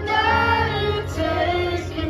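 Live concert music through a large outdoor PA: a sung melody over a steady bass line.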